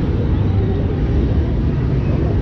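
Steady low rumble of wind buffeting a camera microphone high in the open air.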